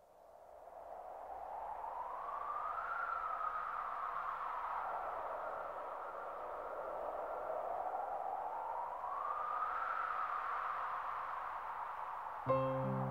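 Opening of a soft-rock recording: a wind-like whooshing hiss fades in, then slowly rises and falls in pitch twice, with no instruments playing yet.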